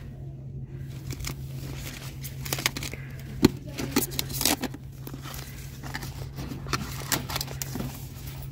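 Small spiral-bound paper notebooks being handled: pages and covers rustling and tapping as a notebook is closed and slid back into a cardboard display box among the others, with one sharp click about three and a half seconds in. A steady low hum runs underneath.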